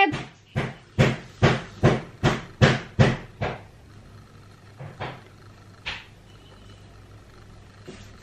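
A quick run of about eight sharp knocks, two or three a second, then three scattered single knocks, with a faint steady whine behind them.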